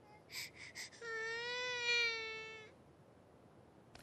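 Newborn baby fussing: three short breathy whimpers, then one long cry of under two seconds that rises slightly and falls away.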